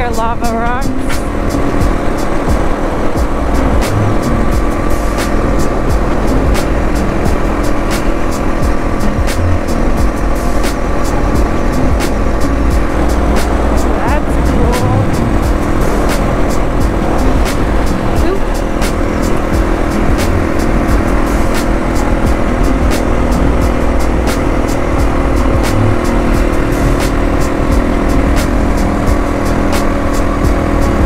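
Dual-sport motorcycle engine running at a steady cruising speed on the highway, its pitch holding constant throughout, with road and wind noise.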